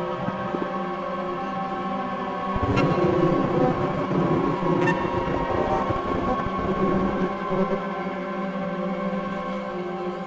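Improvised experimental drone from electric guitar and a floor of effects pedals: many steady tones layered together. A low rumbling layer swells in about two and a half seconds in, and two sharp clicks come about two seconds apart.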